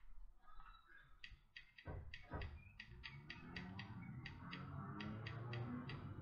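Light plastic button clicks, about four a second, starting about a second in: the up-arrow adjustment button of an iJoy Diamond PD270 box mod pressed repeatedly to step the wattage up. Faint background music plays underneath.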